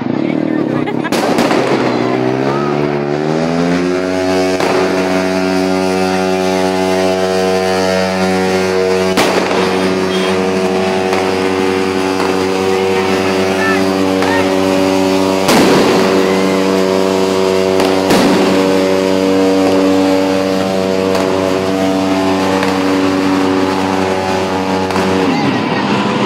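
Firework bangs going off now and then, about five in all, over a loud low droning tone that rises in pitch for the first few seconds and then holds steady.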